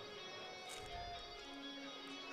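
Faint background music with sustained notes.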